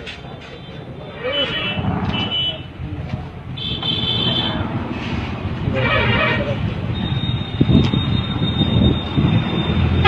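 Outdoor street noise with indistinct voices of men talking nearby and a running vehicle, with a few short horn-like toots, one of them about four seconds in.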